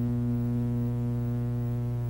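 Steady electrical mains hum with a buzzy stack of overtones on the soundtrack of an old television broadcast recording.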